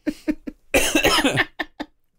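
A person coughing into a microphone, after a few short bursts of laughter, with a couple of small clicks near the end.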